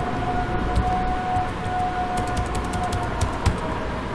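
Computer keyboard keys clicking in a quick run in the second half, over a steady background hum with a faint held tone.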